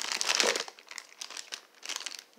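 A plastic bag of caramel squares crinkling as it is picked up and handled. The crackling is loudest in the first half-second, then continues as quieter, irregular rustling.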